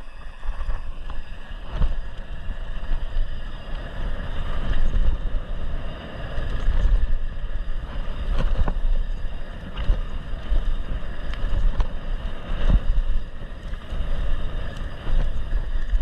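Mountain bike descending a dirt trail at speed: wind buffeting the camera microphone over the hum of tyres on dirt, with scattered sharp knocks and rattles from the bike over bumps and roots.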